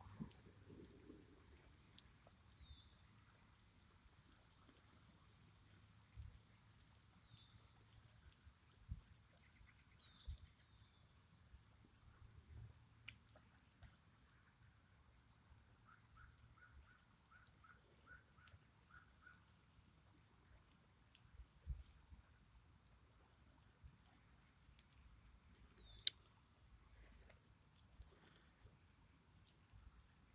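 Near silence with faint birdsong: a few short high chirps that slide down in pitch, and a brief trill of about ten quick notes. Scattered faint low knocks and one sharp click are also heard.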